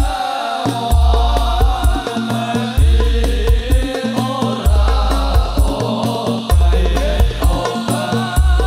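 Sholawat, an Islamic devotional song, sung by a group of men in a koplo-style arrangement. Sharp percussion strikes keep the beat, with a deep bass boom about every two seconds.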